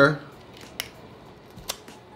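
Two short, sharp clicks about a second apart: a knife blade catching on a littleneck clam's shell as it is worked into the crack to sever the tendon holding the shell shut.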